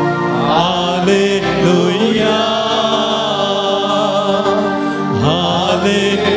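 A devotional hymn sung with vibrato over sustained chords that hold steady underneath. A new sung phrase begins about half a second in and another near the end.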